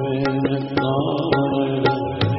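Sikh kirtan: harmoniums holding sustained chords under a singing voice, with sharp tabla strokes punctuating the music.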